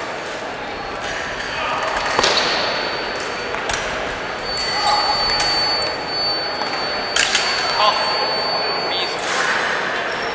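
Foil fencing bout on a wooden gym floor: sharp knocks from footwork and blades, over the steady chatter of a large echoing hall. A thin, steady high electronic tone from a fencing scoring machine sounds from about halfway in and cuts off near the end.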